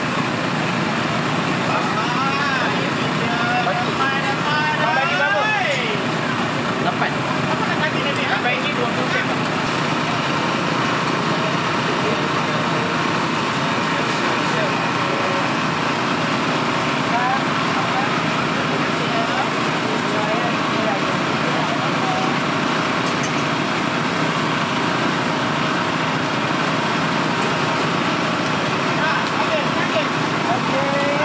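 Steady din of a busy street-food stall: a constant rush of background noise with people's voices talking, clearest in the first third.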